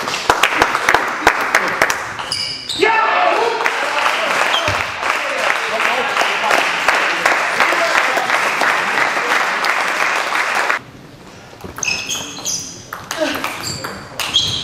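Table tennis ball clicking off bats and table during a rally, then spectators clapping and shouting for about eight seconds. The clapping cuts off suddenly about eleven seconds in, and voices follow.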